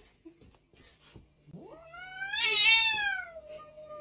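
Domestic cat yowling: one long drawn-out call that starts about halfway through, climbs, then sags slowly and is still going at the end. It is a threat yowl at the cat facing it.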